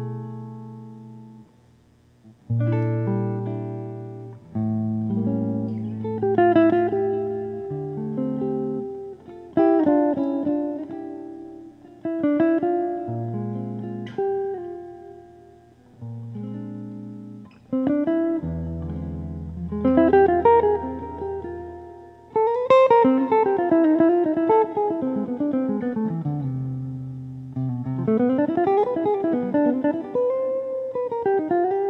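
Solo hollow-body archtop jazz guitar playing chords over bass notes in short phrases, with a brief pause about two seconds in and sliding melody notes near the end.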